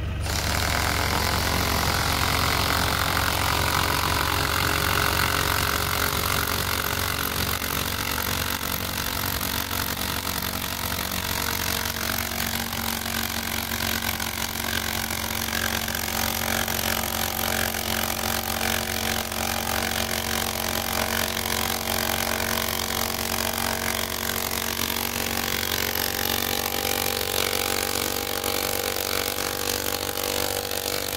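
Compact diesel tractor engine idling steadily, the low drone holding even throughout.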